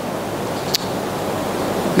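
Steady rushing background noise, with one brief click about three quarters of a second in.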